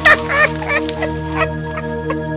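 A man's high, warbling cackle of laughter in quick bursts through the first second and a half, over steady background music.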